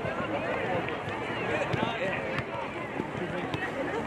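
Many overlapping voices across an open soccer field: players and sideline spectators calling and shouting, none clearly picked out, with a few sharp knocks among them.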